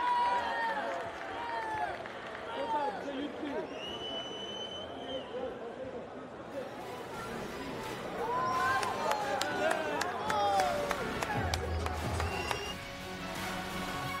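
Arena crowd cheering and shouting excitedly, many voices overlapping, after the bout is declared a draw. Music comes in near the end.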